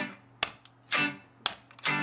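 Les Paul-style electric guitar played slowly in ska style: short chord strums about once a second, each cut off quickly by muting, with a muted click of the strings between them.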